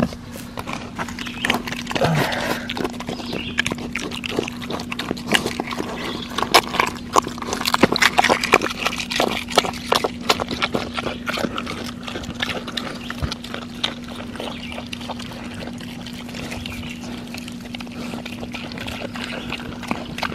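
Piglets rooting and chewing with their snouts in the dirt: a fast, irregular run of wet clicks and crunches, busiest in the first half and thinning out later.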